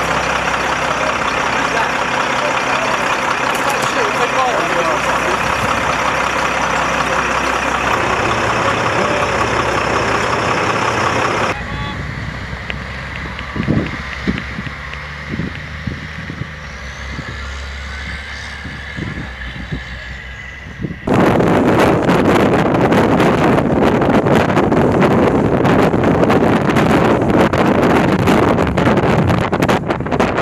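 A military troop-carrier truck's engine running steadily, with low hum. About halfway through it drops to a quieter stretch with a few thumps, then gives way to a loud, even rush of wind and road noise from a moving vehicle.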